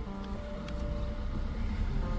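Low, steady rumble of a car driving along a road, with faint background music holding long notes underneath.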